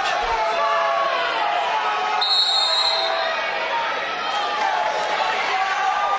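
Arena crowd of many voices yelling and calling out at once, with a referee's whistle blown once for just under a second, about two seconds in, stopping the wrestling for a stalling call.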